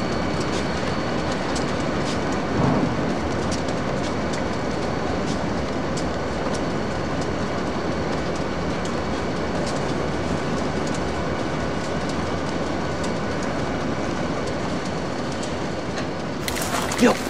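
Freight train rolling along the rails: a steady rolling noise from the wheels, with scattered clicks as they pass over rail joints.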